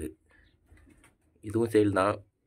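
Domestic pigeon cooing close by: a brief call right at the start, then a longer coo from about one and a half seconds in.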